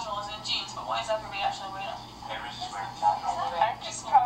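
A woman talking, played back through a television speaker and sounding thin, with almost no low end.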